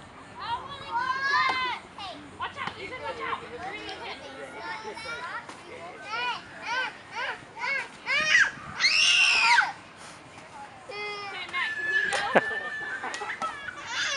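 Young children shouting and chattering in high voices, with one long, loud shriek about nine seconds in and a single sharp knock near the end.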